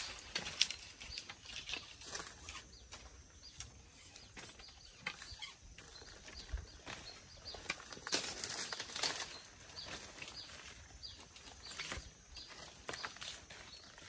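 Faint, irregular rustling and clicking, most crowded about eight to nine seconds in.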